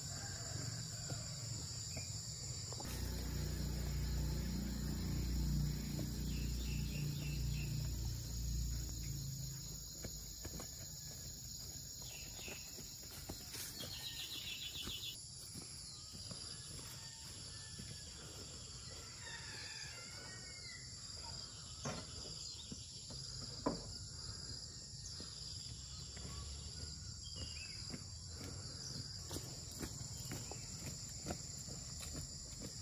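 Steady insect chorus, a continuous high buzz, with a few bird calls scattered through. A low rumble sounds in the first third, and a single sharp knock comes past the middle.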